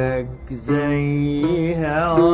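Egyptian Arabic song music in a passage without words: one melodic line of long held notes that slide between pitches, with a brief drop in loudness about half a second in.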